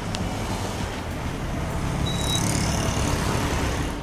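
Steady street traffic noise: motor vehicles running, a motorcycle among them close by, the sound swelling slightly in the second half.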